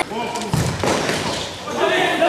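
Players' voices calling out in a large, echoing sports hall, with a short dull thud about half a second in.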